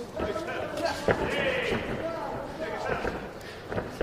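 Men's voices talking throughout, as in televised fight commentary, with one sharp thud about a second in.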